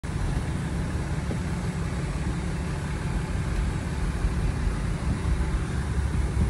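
A vehicle engine idling: a steady low rumble that holds even throughout.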